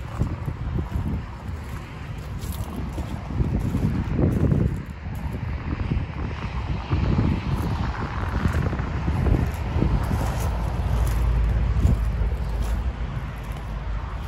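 Wind buffeting the microphone in uneven gusts, a low rumble that swells and fades.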